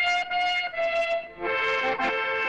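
Background music with a brass melody that begins sharply, moving through a few held notes, with a fuller accompaniment joining about one and a half seconds in.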